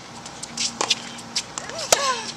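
Tennis ball struck back and forth in a rally: a fainter hit from the far end about a second in, then a loud, sharp racket strike on a groundstroke from the near player near the end, with a short vocal grunt just before it.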